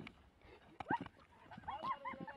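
A horse bucking with a person hanging on: dull thuds and a sharp knock about a second in, then a high, wavering cry near the end.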